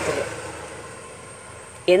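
A woman's voice breaks off, then a faint, even background of passing vehicle noise fades away over the pause. Her speech resumes near the end.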